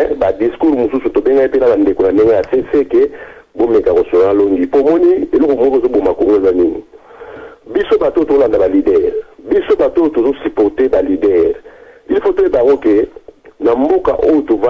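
A caller talking over a telephone line: speech that sounds thin and narrow, coming in phrases broken by short pauses.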